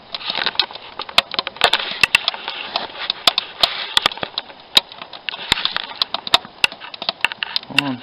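Wood fire crackling inside a barbecue made from a 200-litre steel drum. Irregular sharp pops and snaps sound over a steady hiss.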